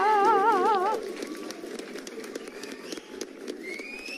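A celebration sound effect. A warbling, wavering tone lasts about a second, then comes a busy crackling haze of many small clicks, with a rising whistle near the end.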